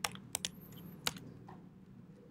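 A few keystrokes on a computer keyboard: four sharp key clicks in about the first second, editing out a line of code.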